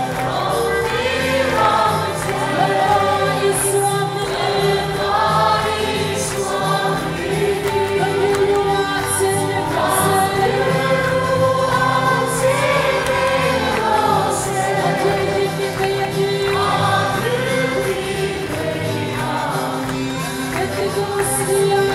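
A large congregation singing a gospel worship song together in chorus over instrumental accompaniment, with a steady held note underneath and short bright shimmers like a tambourine every second or two.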